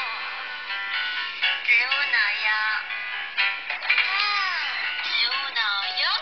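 A song with a singing voice, played back through the small loudspeaker of a 3.5-inch touchscreen bar mobile phone from a video in its media player. It sounds thin, with almost no bass.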